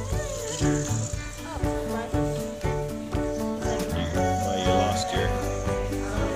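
Background music with held notes that change every half second or so over a steady bass.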